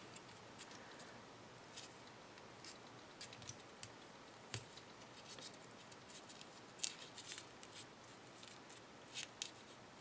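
Faint, scattered crinkles and clicks of a small folded paper star being pinched and pressed between the fingers, with a couple of louder crackles near the end.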